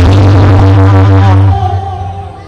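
Loud amplified music with a heavy bass played over a sound system, cutting off suddenly about one and a half seconds in.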